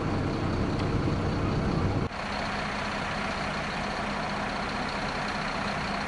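Truck engine idling steadily. About two seconds in the sound drops suddenly to a quieter, even hum that continues.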